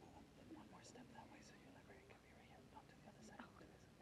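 Near silence: faint, murmured talk in the room, with a few soft clicks.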